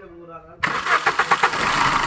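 Suzuki Ritz 1.3 DDiS four-cylinder turbodiesel engine starting: it fires suddenly about half a second in with a quick run of pulses, then settles into a steady run.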